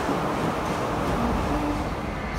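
Steady background noise of an underground metro station, with a metro train standing at the platform below.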